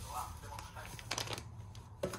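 Silver foil tea pouch crinkling and rustling as it is handled, with a cluster of sharp crackles a little past one second in.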